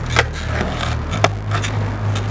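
Skateboard on concrete: several light clicks and knocks as the rider sets his feet on the board and crouches for a kickflip. Low background music bass notes run underneath.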